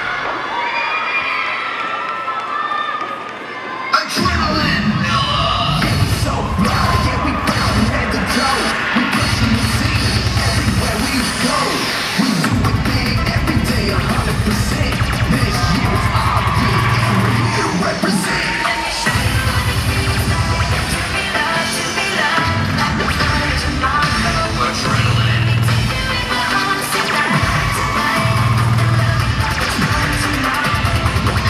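A crowd cheering and children shouting; about four seconds in, a sharp hit starts loud bass-heavy cheer routine music, with the crowd cheering over it.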